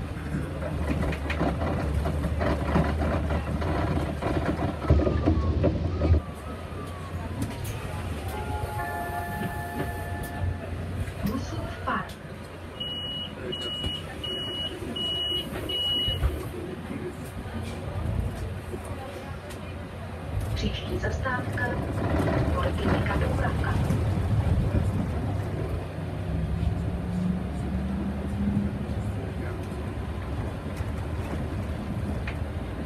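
Cabin sound of a Solaris Urbino 15 III city bus: steady engine and road noise, loudest in the first few seconds. Near the middle come five short, evenly spaced high beeps, the door-closing warning, with a brief chime-like tone a few seconds before them.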